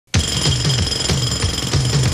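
Jackhammer pounding in rapid repeated blows, starting abruptly, with music underneath.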